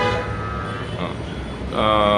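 A vehicle horn sounds one long, steady note that stops about a second in, over a low engine rumble. A man's voice starts near the end.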